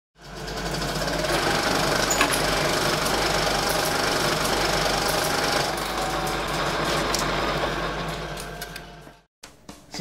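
Glitch-effect intro sound: a dense, harsh buzzing rattle over a steady low hum, fading out near the end and cutting off.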